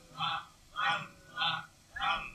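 A man's voice making short, evenly spaced chanted syllables into a microphone, about three in two seconds, much quieter than the singing around it.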